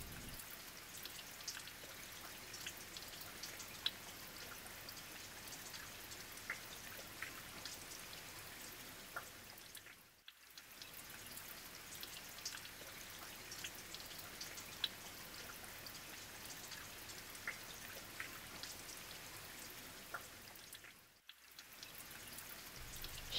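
Faint steady hiss dotted with small scattered ticks and drip-like clicks, dropping out briefly twice.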